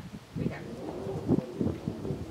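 A dove cooing softly in the background, low pitched notes under a brief spoken phrase near the start.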